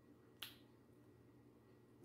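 Near silence with one short, sharp click about half a second in.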